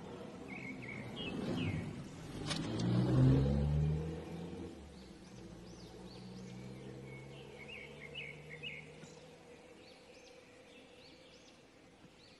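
A road vehicle's engine passing by, growing louder to a peak about three seconds in and then fading away. Birds chirp in short bursts throughout.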